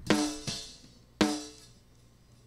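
Snare drum top-mic track from a multitrack drum recording, played back through a gate/expander. Two snare hits land about a second apart, each with a short ringing tail that fades before the gate closes and cuts the background bleed, with hysteresis being brought in.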